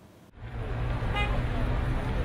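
City street traffic: a steady low rumble of car engines that comes in about a third of a second in, with a short car horn toot about a second in.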